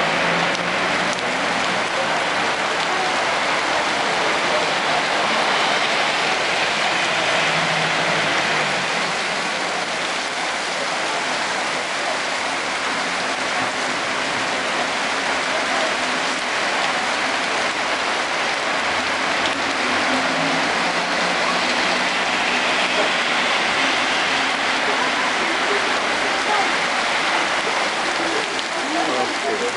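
Very heavy rain pouring steadily onto paved pavement and road, splashing on the wet surfaces in an even, unbroken hiss.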